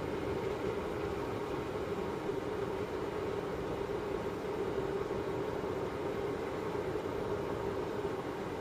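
A car driving at steady speed: an even hum of engine and tyre noise that stays the same throughout.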